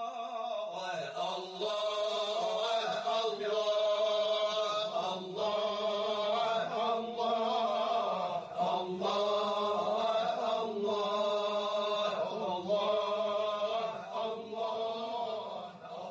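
A solo voice chanting in long, held, melodic phrases of a few seconds each, with short breaks between them.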